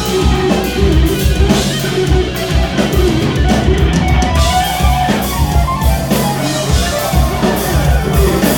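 Live instrumental prog-metal jam: electric guitars playing fast lead lines over bass guitar and a drum kit, continuously and loud.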